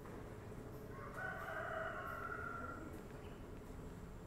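A rooster crowing once: a single drawn-out call lasting about two seconds, starting about a second in.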